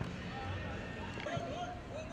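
Faint, overlapping chatter and calls from several people around a football pitch, with a couple of faint short knocks.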